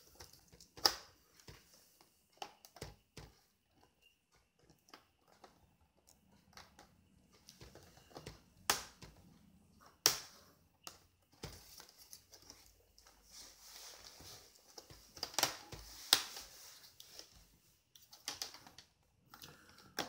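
Plastic screen bezel of a Sony VAIO SVE17 laptop being prised off by hand, its retaining clips snapping loose in irregular sharp clicks. The loudest snaps come about 9, 10 and 15–16 seconds in, with softer scratching of the plastic being handled between them.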